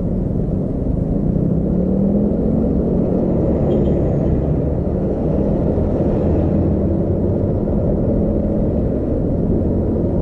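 Steady low rumble of a moving vehicle's engine and road noise, picked up by a camera mounted on the vehicle, with a faint engine tone that rises a little about two seconds in.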